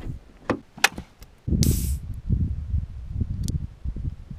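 Two sharp clicks of a car door handle and latch, then a short hiss about one and a half seconds in, followed by uneven low knocking and rumbling of handling close to the microphone.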